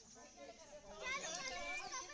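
Indistinct chatter of several overlapping voices, faint at first and louder from about a second in.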